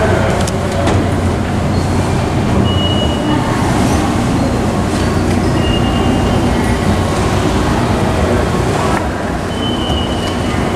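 Steady low rumble and hum of a moving escalator in an underground subway station, with three brief high-pitched tones spaced a few seconds apart.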